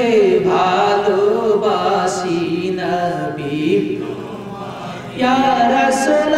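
A man's voice chanting a sermon in a long melodic line, holding notes that rise and fall rather than speaking. The phrase fades a little toward the end and a new one starts loudly about five seconds in.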